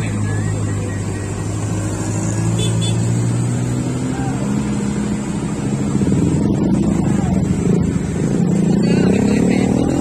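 Mixed road traffic climbing a steep bend: vehicle and motorcycle engines run steadily in a low drone, and an engine revs up with rising pitch over the last couple of seconds.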